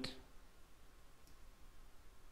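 Near-silent room tone with a single faint computer mouse click a little past the middle.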